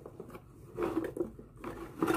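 Headbands being rummaged through in a cardboard box: irregular rustling and light clattering as they are pulled apart, busiest about a second in.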